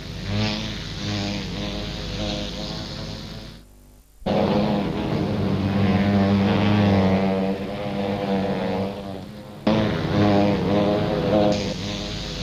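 Background music with a steady low buzzing drone of bee wings, broken by a brief gap about four seconds in.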